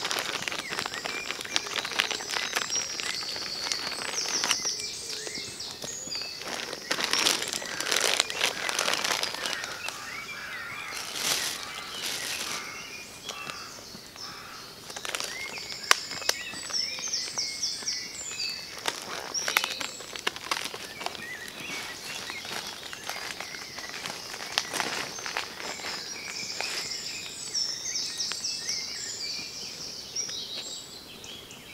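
Birds singing, with repeated high trilled phrases over steady outdoor ambience, while plastic food bags are crinkled and rustled in several short bursts.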